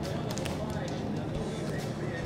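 Indistinct background chatter of a busy restaurant bar, with a few faint clicks and clatter.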